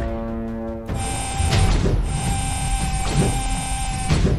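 Background music: a held, buzzy tone for about the first second, then a tense track with one steady high note and low hits about every second and a half.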